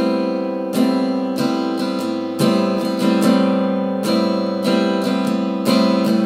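Acoustic guitar strumming a held A minor 9 chord in a steady rhythm of down and up strokes (down, down, up, up, down, down, down, up), the chord ringing on between strokes.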